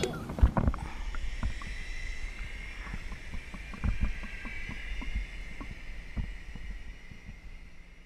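Muffled underwater sound picked up by a camera held below the lake surface: a low rumble with a faint hiss and scattered soft knocks, the sharpest one near the start.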